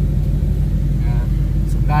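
Supercharged 5.8-litre V8 of a 2014 Shelby GT500 idling steadily at a stop, a low rumble heard from inside the cabin.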